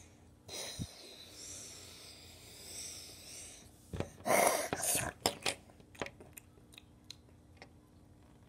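Breathy mouth sound effects: a long breathy hiss lasting about three seconds, then a louder, sharper breathy burst about four seconds in. A few light clicks of plastic toy pieces being handled follow.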